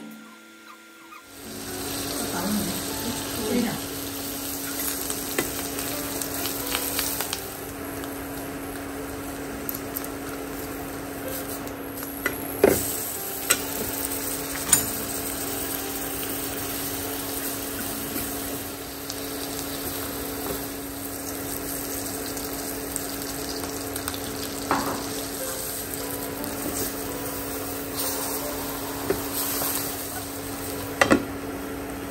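Butter sizzling and crackling in a nonstick frying pan, with large mushroom caps frying in it; the sizzle starts a second or so in. A few sharp clicks stand out about halfway through, over a steady low hum.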